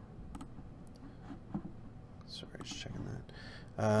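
A few faint computer mouse clicks, then quiet muttering under the breath in the second half.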